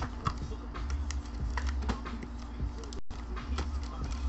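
Scattered light clicks and taps over a low steady hum, with a brief dropout about three seconds in.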